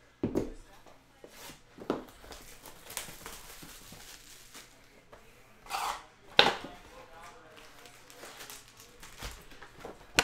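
A sealed cardboard trading-card hobby box being unwrapped and opened: plastic wrap crinkling and tearing, cardboard flaps knocking, then foil packs handled. It comes as a series of sharp crackles and knocks, the loudest about six seconds in.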